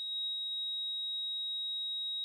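A single steady, high-pitched electronic beep tone, held unbroken at one pitch.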